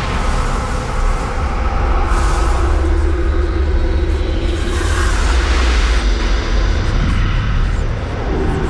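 Dark, ominous film score: a deep steady rumble under long held notes, with whooshing swells about two and five seconds in.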